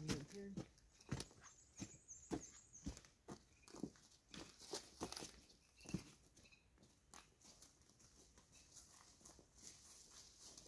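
Faint footsteps and rustling on dry, leaf-covered ground, a run of short knocks that thins out after about six seconds, with a dog stirring close to the microphone.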